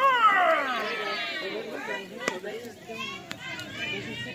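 High young voices calling out and chattering, with one long falling shout at the start. A single sharp pop about two seconds in is the pitch landing in the catcher's mitt.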